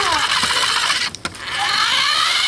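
Small electric motor of a remote-control toy car whining as it drives, its pitch falling and then climbing again; the whine drops out briefly a little past a second in.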